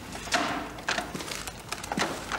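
Several short knocks and rustles as a person comes in through a doorway carrying a plastic bag.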